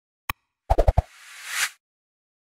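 Logo-animation sound effects: a single click, then a quick run of four short pops, then a whoosh that swells and stops abruptly.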